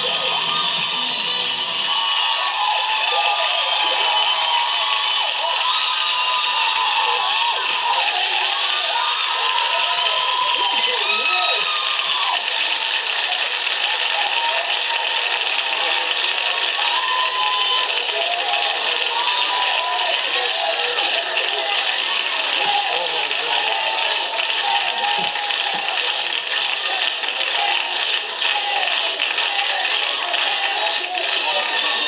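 Studio audience cheering and shouting, many voices at once, over celebratory live band music, heard through a television's speaker. The mix stays loud and unbroken throughout.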